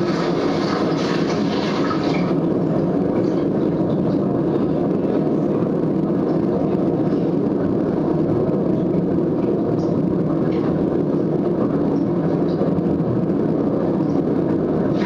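Steady low rushing rumble of a nature documentary's underwater soundtrack, heard as it plays through classroom speakers during a pause in the narration.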